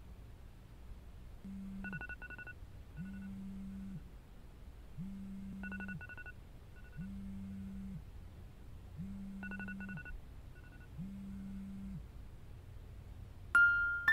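Smartphone alarm going off: a low buzz about a second long, repeating every two seconds or so, with groups of short high beeps among the buzzes. Electric piano notes come in just before the end.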